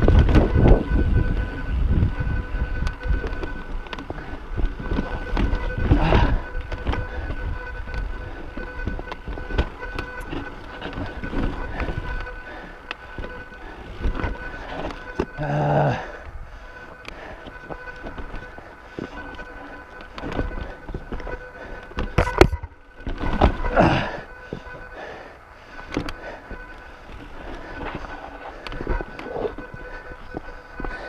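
Mountain bike rolling over rocky singletrack, heard from the rider's chest: tyre rumble and bike clatter, loudest at the start, with sharp jolts about six seconds in and again around twenty-two to twenty-four seconds.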